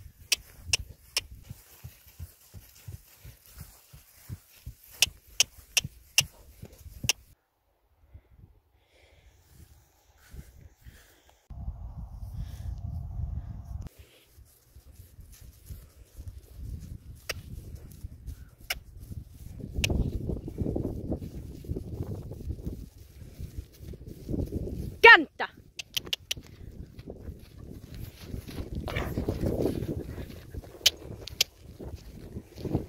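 A horse being lunged on grass: hoofbeats with sharp clicks for the first several seconds, then a low rumble like wind on the microphone with scattered clicks and one loud falling sweep.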